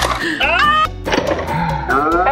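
Background music with a steady beat, over excited voices that cry out in rising glides.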